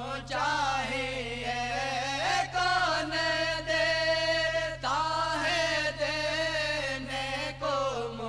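A solo male voice chanting a naat (Urdu devotional poem in praise of the Prophet) in long, ornamented phrases, with one long held note in the middle. A steady low hum sits underneath.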